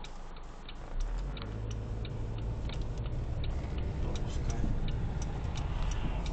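Car's turn-signal indicator ticking steadily, about three clicks a second, inside the cabin, over engine and road rumble that rises about a second in.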